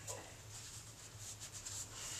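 Faint rustling and rubbing scrapes, several short ones in a row, over a low steady hum.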